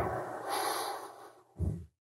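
A person's breath heard through a courtroom microphone: a soft exhale that fades, then a brief low voice sound that cuts off suddenly into dead silence.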